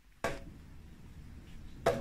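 A regular hammer striking the side of a leather turn shoe, twice: once just after the start and once near the end, each strike sharp with a short ring. The leather is being beaten to soften the shoe's sides for turning it right side out.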